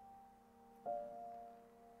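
Soft background piano music: held notes, with a new chord struck about a second in and left to ring.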